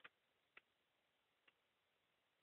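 Near silence broken by three faint, sharp clicks: a cockatiel's beak nipping at a pen. The first comes at the start, the second about half a second later, and a weaker one about a second after that.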